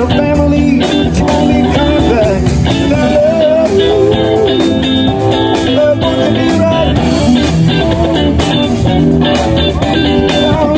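Blues-rock music played on two electric guitars over a steady full-band backing, with a guitar line bending in pitch.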